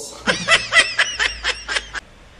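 A burst of laughter: a quick run of about nine short 'ha' pulses, roughly five a second.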